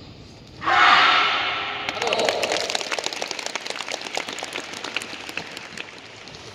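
A loud shout from several voices together about half a second in, then an audience clapping and cheering, the applause slowly thinning toward the end.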